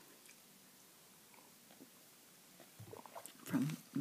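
Faint, soft clicks of bubble gum being chewed close to the microphone during a quiet pause, then a short voiced mouth sound about three and a half seconds in.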